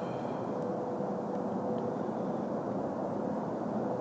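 Steady low background rumble with a faint steady hum and no distinct events, like distant traffic or wind.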